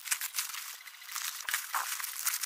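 Plastic mailer bag and bubble wrap crinkling and rustling as a parcel's contents are pulled out by hand: a busy run of small, mostly high-pitched crackles.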